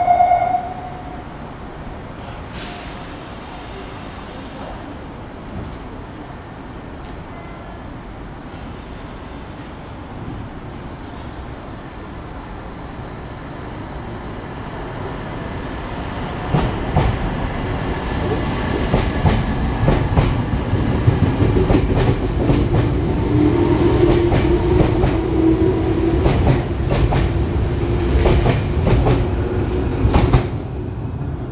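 A Meitetsu 100 series electric train, converted to VVVF inverter control, pulling out of a station. A short hiss of air comes about two and a half seconds in. Then, from about halfway, the wheels clack over rail joints ever faster and a motor whine grows louder as it accelerates past.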